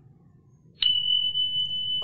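Notification-bell chime sound effect: one sharp strike a little under a second in, ringing on as a single steady high-pitched tone, after a quiet start.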